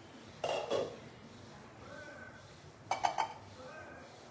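Cookware clinking and knocking in two short bursts, about half a second in and about three seconds in, with low room noise between.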